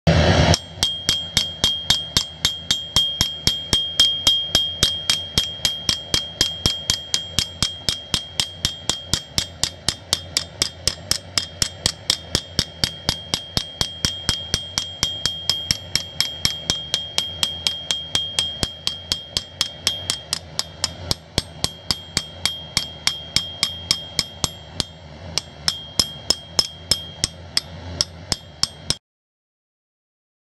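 Hammer blows on a red-hot steel knife blade lying on an anvil, coming fast and even at about three or four a second, with a high ringing tone from the metal under the strikes. The hammer is pitting the blade surface to give it a rough hammered texture.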